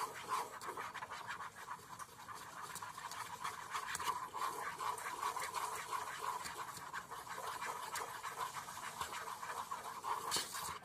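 A spoon stirring and scraping around a bowl, mixing powdered sugar and milk into a thin icing: a steady run of quick little scrapes and clicks.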